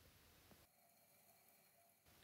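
Near silence: only a very faint background hiss.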